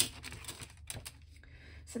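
Several light clicks and taps of hard plastic circle templates being picked up and handled on a desk, mostly in the first second.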